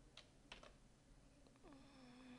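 Near silence with a few faint computer keyboard keystrokes, two light clicks in the first half-second.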